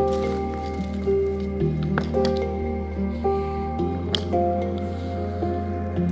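Background music of held notes changing every half second or so, with a few sharp taps of a hammer driving nails partway into artificial grass strips between stone paving slabs.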